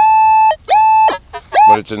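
Minelab CTX 3030 metal detector sounding a steady high beep, about half a second long, repeated as the coil passes back and forth over a target, then two shorter chirps near the end. The repeatable tone marks a good target reading 11-35, about two inches deep, with iron reject on.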